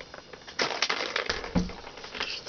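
Rapid, irregular clicking and scratchy rattling from a cat playing with its toys, starting about half a second in. There is a brief low hum near the middle.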